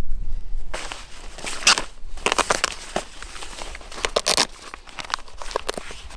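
A level 3A soft body armour vest being handled and pulled open by hand: its fabric carrier and the covered panels inside crackle and crinkle in irregular short rasps.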